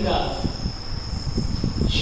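Marker pen strokes on a whiteboard, heard as soft irregular scrapes and rubs, over a steady high-pitched tone in the background.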